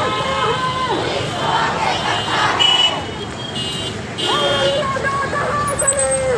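Crowd of marching women protesters chanting slogans, with long shouted calls that fall away at their ends.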